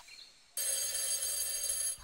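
Alarm clock bell ringing steadily, starting about half a second in, as a wake-up alarm.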